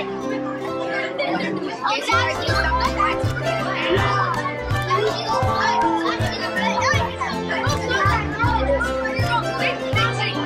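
Music with a steady, beating bass line, under the busy overlapping chatter of many children's voices.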